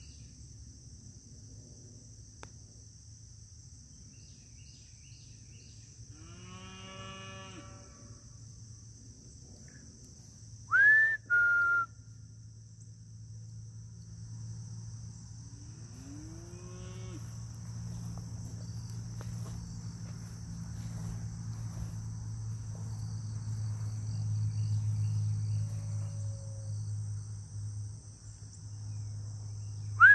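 Insects, crickets by the sound of it, drone steadily in a grassy field. A sharp human whistle about 11 seconds in rises and then holds its note, with a second short whistle right after; it is the loudest sound here. Two distant animal calls come about 7 and 16 seconds in, and a low hum swells from about 14 seconds, peaks near 25 and fades.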